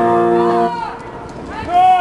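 Recorded song playback stops on a held chord about two-thirds of a second in. Near the end comes one short, loud call that rises and falls in pitch.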